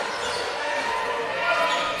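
Basketball dribbled on a hardwood court during a game, with the steady ambience of a large hall.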